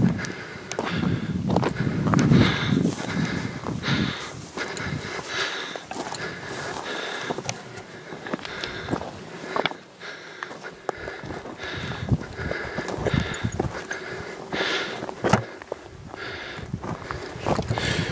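Footsteps on loose rock and dry grass, a person walking steadily uphill over stony ground.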